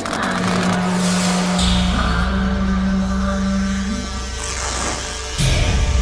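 Background music: a steady low drone, joined by a deep bass note about a second and a half in, with a sudden loud hit near the end.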